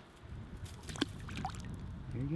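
Handling noise of fishing gear: a sharp click about a second in and a few lighter clicks, over a low rumble.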